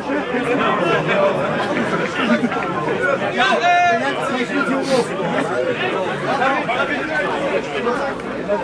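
Several people talking over one another in steady, overlapping chatter, with one voice rising to a louder call about three and a half seconds in.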